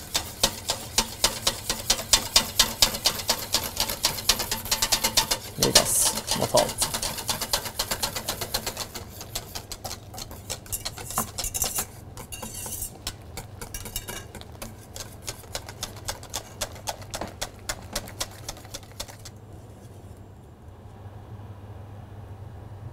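Wire balloon whisk beating against a stainless steel bowl in rapid clicking strokes, several a second, as hot milk is poured onto egg yolks for vanilla sauce; the constant whisking keeps the yolks from curdling. The strokes grow fainter in the second half.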